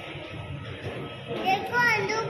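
Low murmur of voices, then a young child's high-pitched voice calling out from about a second and a half in, its pitch going up and down.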